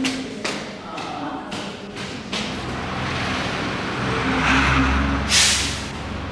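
Street traffic: a motor vehicle's low engine rumble building up through the second half, with a short, loud hiss near the end.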